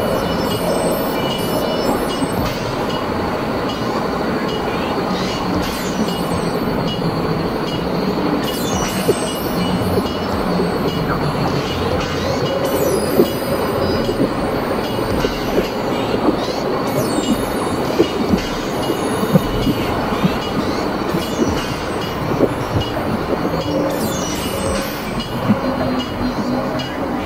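Experimental electronic noise music: a dense, steady noise drone with many scattered clicks and a few held tones, and brief bursts of high, bright texture now and then.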